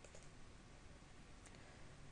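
Near silence, with a few faint computer mouse clicks: a quick pair at the start and a single one about a second and a half in.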